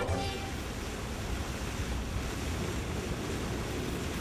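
Steady rushing outdoor noise of wind and flowing river water, with no distinct events.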